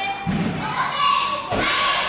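Two dull thuds of a gymnast's feet and hands striking a wooden balance beam, about a second apart, over voices in the background.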